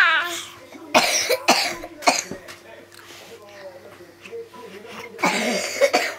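A person coughing in short bursts: a few quick coughs in the first two seconds and a longer bout near the end, with quiet between.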